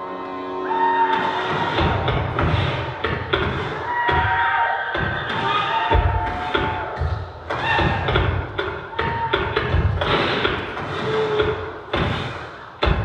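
Battle-scene film soundtrack: flintlock musket shots and heavy thuds, repeated and irregular, over dramatic music, with one strong shot about six seconds in.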